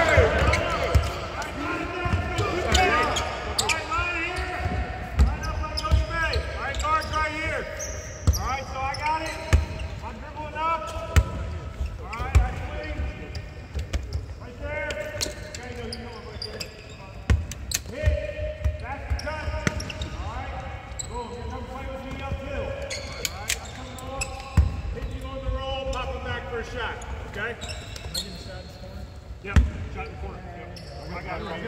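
Several basketballs bouncing and being dribbled on a hardwood court, an irregular patter of bounces from many players at once, with players' voices calling out over them.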